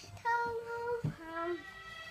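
A young child singing two held notes, the second one lower.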